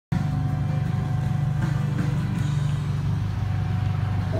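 Ducati 1198's L-twin engine idling steadily through a Termignoni exhaust, a low, even sound.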